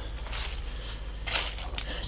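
Footsteps crunching on dry leaves and debris, two steps about a second apart.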